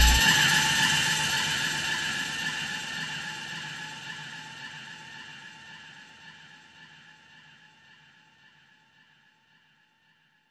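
Closing of an electronic song: the bass cuts off at the start, leaving a held high tone texture over a light hiss that fades out steadily to silence by about nine seconds in.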